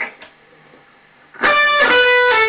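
Electric guitar: after a second or so of quiet, a fast run of picked notes starts about one and a half seconds in and lands on a single held note.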